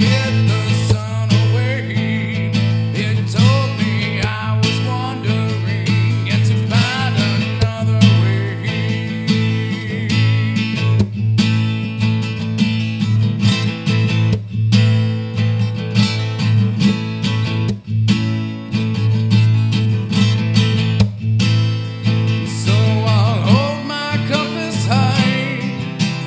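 Acoustic guitar played fingerstyle with percussive slaps on the strings and body, an instrumental passage with no singing.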